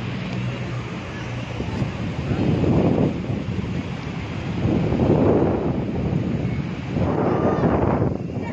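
Wind rushing over the microphone, swelling in about three gusts, with a faint low hum in the first second.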